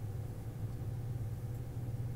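Room tone: a steady low hum with nothing else happening.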